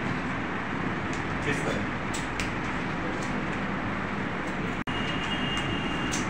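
Steady room noise with a hiss, and faint voices in the background; the sound drops out for an instant near the end, and a thin high tone follows.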